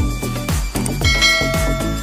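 Electronic dance music with a steady beat. About a second in, a bright bell chime rings over it and holds for most of a second.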